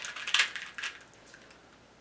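A few quick plastic clicks from a 2x2 speed cube being turned in the hands, all in the first second.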